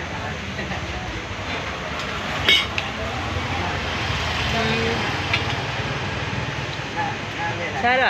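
Low engine rumble of a vehicle passing on the road, swelling through the middle, with a sharp clink of cutlery on a plate about two and a half seconds in.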